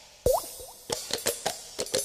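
Popping sounds in a break in the music. One loud plop with a quick upward-gliding pitch comes about a quarter second in, followed by a run of lighter pops and clicks.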